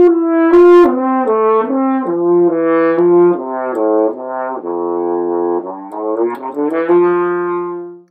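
French horn playing a short melodic passage of sustained notes. The line dips to lower notes in the middle, climbs back up and ends on a long held note that dies away.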